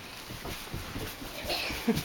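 A young child's wordless voice, with light thuds of bare feet running on a carpeted floor; the loudest sound, a short vocal burst, comes near the end.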